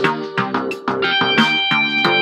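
A software rock lead-guitar sound (Soundtrap's 'Mountain Top Lead') played from a laptop keyboard over backing tracks with a steady beat; about a second in, the guitar sounds one long held note.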